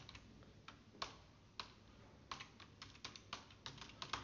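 Faint keystrokes on a computer keyboard: a few spaced key presses, then a quicker run of them in the second half.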